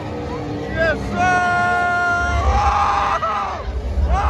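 A voice yelling a long, drawn-out shout held on one high pitch, followed by a second held cry, with a low race-car engine rumble building from about halfway through.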